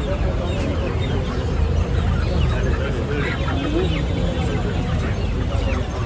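Caged chickens clucking over a steady background of crowd chatter and market noise.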